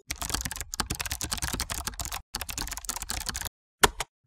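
Fast computer keyboard typing, a dense run of keystrokes with a brief pause about two seconds in, stopping about three and a half seconds in, then a single click just before the end.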